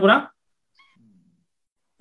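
A man's speech breaking off just after the start, then a pause holding only a faint, short sound about a second in.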